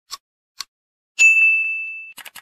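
Logo-reveal sound effect: two short faint ticks, then a single bright, high ding just over a second in that rings on and slowly fades.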